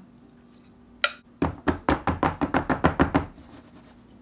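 A single tap about a second in, then a rapid run of about a dozen knocks, some six a second, lasting about two seconds: a metal springform pan full of cake batter being knocked against a kitchen countertop to level the batter.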